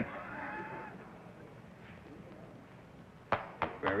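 A string-wound spinning top thrown onto a hard floor lands with a sharp knock about three seconds in, then knocks twice more as it bounces and settles into its spin. Before it, only faint voices.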